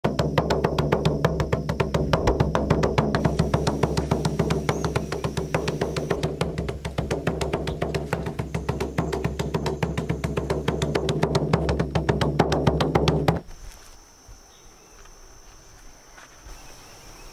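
Percussion music: fast, even drumbeats over a low steady drone, cutting off suddenly about three seconds before the end. After it only a faint, steady, high-pitched insect drone remains.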